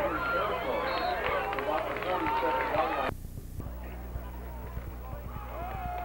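Football crowd and sideline voices shouting and cheering, several voices overlapping with no clear words. About three seconds in, the sound cuts out for a moment and comes back as quieter crowd noise, over a steady low hum.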